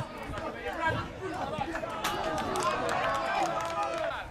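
Several people on and around an amateur football pitch shouting and calling out over one another, growing louder after about a second, with a few sharp knocks among the voices.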